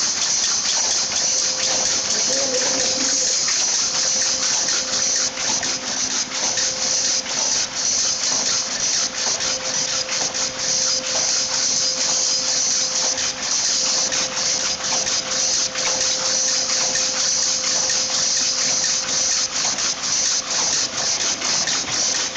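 Rapier power loom fitted with a lappet attachment running at weaving speed: a loud, continuous rapid clatter with a hissy edge and a faint steady hum underneath.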